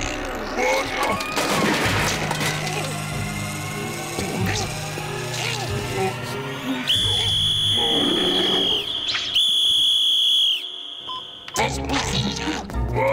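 A whistle blown in two long, steady, high-pitched blasts, the first about seven seconds in and the second shortly after, each tailing off slightly at the end. Cartoon background music and character vocal sounds run beneath.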